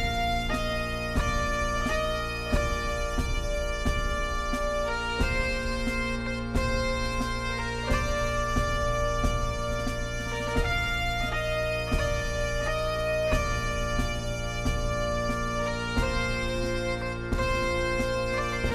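Bagpipe music: a melody of held notes stepping over a steady low drone, with regular sharp note attacks giving a beat. The tune is composed on the Fibonacci sequence.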